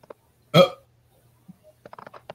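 A person's short, abrupt "oh" about half a second in, with a hiccup-like catch, followed by a few faint clicks near the end.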